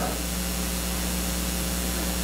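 Steady hiss with a low, even electrical hum underneath: the background noise of the church's sound system and recording, heard in a pause between sentences.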